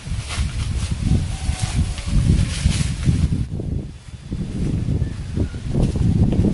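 Irregular rustling and crackling of footsteps through leaf litter and undergrowth, over a low rumble of wind on the microphone.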